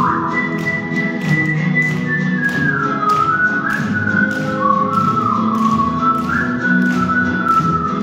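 Live band music in an instrumental break between sung verses: a single high melody held and sliding between notes over sustained chords and a steady beat of about two strokes a second.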